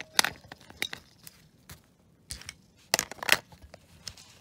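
AA batteries being pushed into a toy's plastic battery compartment: a few sharp clicks and knocks of battery on plastic, a group near the start and a louder group about three seconds in, with faint handling rustle between.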